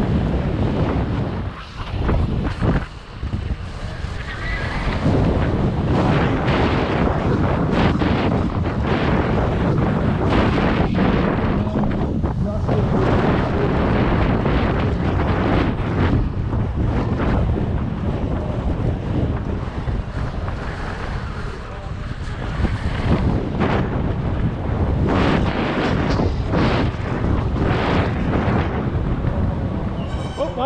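Wind buffeting a helmet camera's microphone as a BMX bike races over a dirt track, with steady tyre noise and frequent knocks from the bumps.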